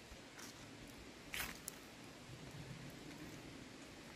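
Faint outdoor background noise, with one brief rustle or crunch about a second and a half in and a few small clicks.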